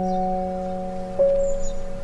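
Slow, soft background piano music: notes held and fading, with a new note struck a little past halfway.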